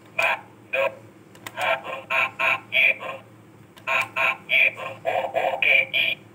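Electronic sound effects from a Bandai DX Ixa Driver toy belt, played through its built-in speaker as it is activated. There are two short pulses at first, then two longer runs of quick pulses, about three to four a second.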